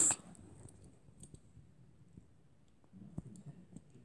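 Faint scattered clicks and light taps of handling noise, with a small cluster of them about three seconds in.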